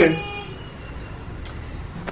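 The end of a spoken word at the start, then steady low background noise with no clear events, a faint room or traffic hum under the dialogue track.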